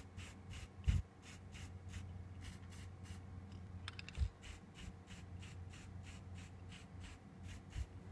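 A few soft low knocks as the freshly spray-painted diecast model car body is moved and set down, the loudest about a second in. Under them run a steady low hum and a faint, even ticking about four times a second.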